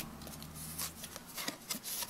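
Faint rustling and light ticks of trading cards and an opened foil booster-pack wrapper being handled.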